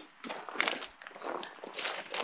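Footsteps on a gravel dirt roadside: a run of short, quiet crunches, with a soft laugh at the start.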